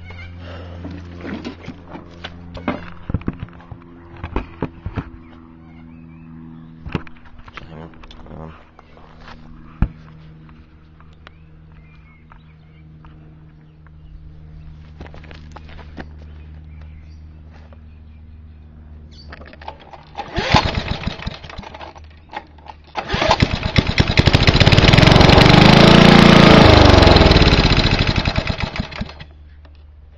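Briggs & Stratton lawnmower engine pull-started from cold on a squirt of petrol down the carburettor. About two-thirds of the way through it fires briefly, then catches and runs loud for about six seconds, rising in pitch and then slowing and dying out. Before that there are only faint knocks and clicks.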